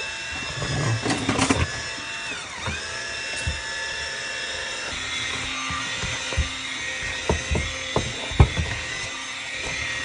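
Princess House 4-in-1 immersion blender's motor whining steadily while it purees mashed potatoes in a stainless steel pot. Its pitch dips briefly and recovers about two and a half seconds in. Several knocks come in the second half, the loudest about eight seconds in.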